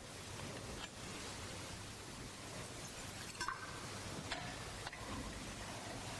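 Small clinks and knocks of altar vessels (chalice and glass cruets) being handled on the altar, four light strikes, the loudest about halfway with a short ring, over a steady hiss.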